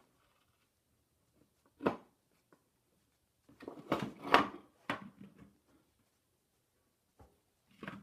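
A few knocks and clatter of handling: one short knock about two seconds in, then a cluster of knocks a second or so later, loudest near the middle, with near silence between.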